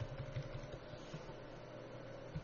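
Steady low background hum with a few faint soft taps.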